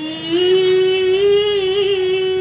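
Women singing an Assamese aayati naam devotional chant, holding one long note that rises slightly at the start.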